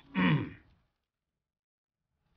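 A man's short grunt, falling in pitch, about half a second long right at the start.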